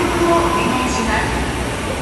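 Train running through an underground station: a steady rumble of wheels and running gear echoing in the enclosed platform.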